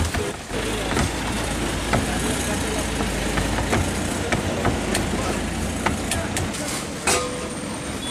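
Roadside street ambience: a steady traffic rumble and indistinct background voices, with scattered soft slaps and squelches from wet gram-flour dough being kneaded by hand in a plastic bowl.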